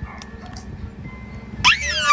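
A woman's high-pitched excited squeal starting near the end, sliding down in pitch, as the engagement ring is shown on a video call; before it only faint low background sound.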